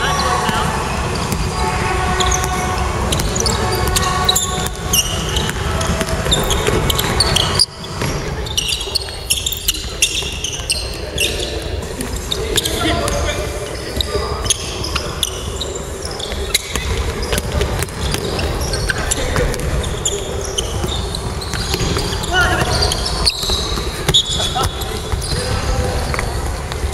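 Basketball being dribbled and bounced on a hardwood gym floor during play, with players' voices in a large, echoing gym.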